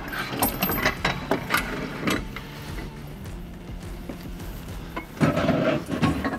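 Metal clicks and knocks as an aluminium canopy leg assembly is slid and seated into its socket on the canopy body, several sharp knocks in the first two seconds, then quieter handling.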